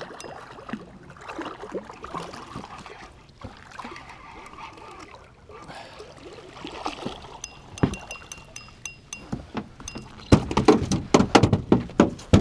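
Spinning reel being cranked as a blue catfish is reeled up to the side of a boat, with water splashing, and a run of quick clicks about eight seconds in. Near the end comes a loud flurry of splashes and knocks as the fish thrashes and is swung aboard.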